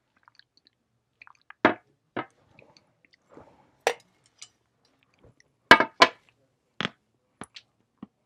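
Mouth sounds of a person drinking and swallowing close to a clip-on microphone: scattered short, sharp clicks with quiet between them, the loudest a close pair about six seconds in.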